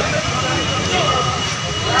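Steady roar of street traffic with faint voices under it and a thin, steady high tone.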